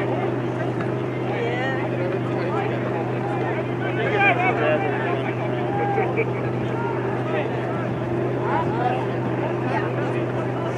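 Indistinct, distant calls and shouts from a soccer match, over a steady low hum throughout; the voices are busiest about four seconds in.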